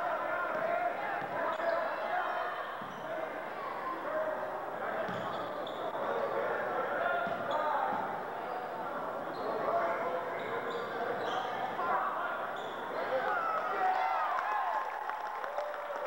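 Basketball being dribbled on a hardwood gym floor during play, with sneakers squeaking and a crowd's chatter carrying through the hall.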